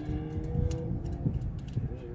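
Soft music from the car's radio, sustained notes that shift pitch, over a steady low rumble, with a few light clicks of something being handled.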